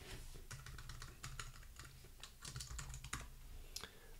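A run of faint, quick keystrokes on a computer keyboard as a short name is deleted and typed into a text field.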